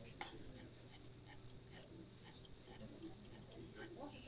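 Near silence: faint room tone with a brief click a fraction of a second in and a few faint, scattered sounds.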